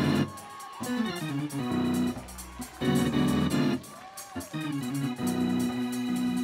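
Electric organ playing, with quick falling runs of notes and then a long held chord near the end.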